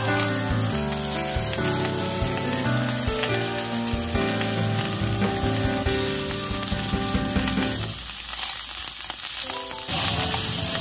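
Strips of beef searing in a hot frying pan, a steady sizzle, with music playing underneath. Near the end the music thins out for a couple of seconds while the sizzle carries on.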